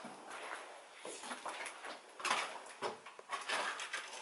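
Footsteps scuffing over a littered floor, with rustles and a few light knocks, irregular and loudest a little past halfway.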